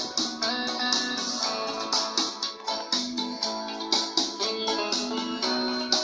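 Karaoke backing track playing an instrumental passage between sung lines: plucked guitar and a held, stepping melody line over a steady beat.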